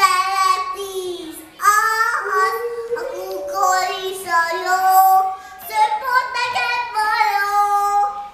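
A young girl singing a children's song in Hungarian, unaccompanied, in phrases of held notes with short breaks for breath.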